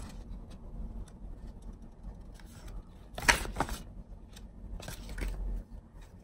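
Faint handling noise: light scraping and small clicks as objects are moved about, with a brief louder sound a little past three seconds in.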